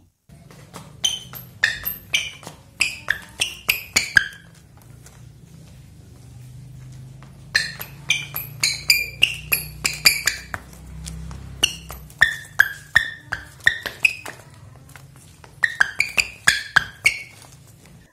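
Rubber outsoles of ASICS Metarise 'super premium' replica volleyball shoes squeaking on a glazed tile floor as the feet twist and scuff: quick runs of short, sharp squeaks, each falling in pitch, in three spells with pauses between. It is a fairly good squeak from the outsole rubber.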